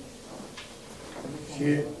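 A pause in a man's reading aloud: low room tone with a faint, brief rustle about half a second in, then his voice starts again near the end.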